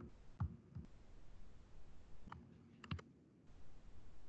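Faint clicks of a computer mouse and keyboard while text is edited: a couple of single clicks early, then a quick run of three around the three-second mark.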